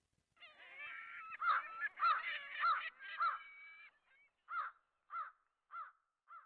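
A flock of large birds calling in flight: a dense overlapping chorus of calls for about three and a half seconds, then single calls spaced about every half second.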